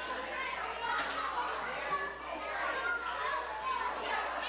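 Children's voices and overlapping guest chatter filling a hall, with no single voice standing out. A sharp click about a second in.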